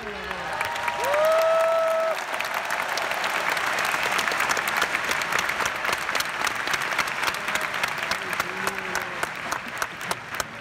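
Large arena crowd applauding and cheering, a dense patter of many hands clapping. About a second in, one long held call rises and then stays on one pitch for about a second.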